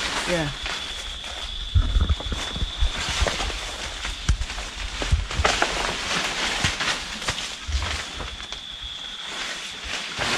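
Leaves and branches rustling and crackling as a long bamboo pole is worked up in a cacao tree to knock down pods, with a few low thumps. A steady high tone in the background stops a few seconds in and returns near the end.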